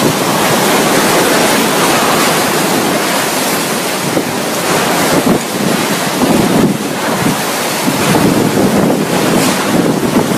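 Cyclone-force wind and heavy rain, loud and continuous, buffeting the microphone. From about halfway through it rises and falls in gusts.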